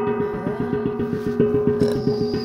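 A brass gong (Korean jing) struck rapidly and evenly with a padded mallet, about five strokes a second, its ringing tone sustained between strokes.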